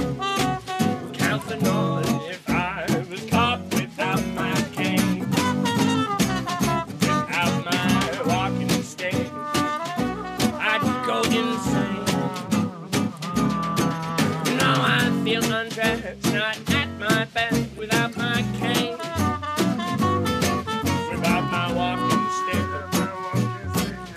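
Small acoustic swing band playing an instrumental passage: a snare drum keeping a steady beat under upright double bass and guitars, with flute and trumpet melody lines over the top.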